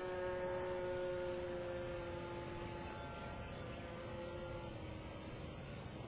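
Radio-controlled model flying boat's motor and propeller heard from below as a steady, faint hum-like whine that slowly fades as the plane flies off.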